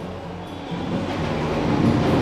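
City noise through an open, unglazed window high above the street: a wash of wind and distant traffic that grows louder after about half a second, with a low rumble.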